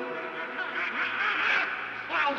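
Donald Duck's cartoon duck voice: a run of rapid, wavering squawks.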